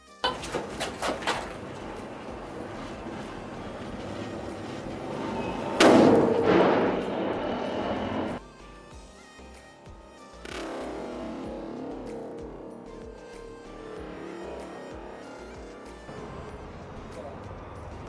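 A sutli bomb going off inside a Royal Enfield Bullet motorcycle silencer about six seconds in: a sudden, muffled blast that stays loud for about two and a half seconds. Before it, a steady hiss and a few quick footsteps near the start.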